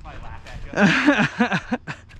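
A man laughing in short breathy bursts.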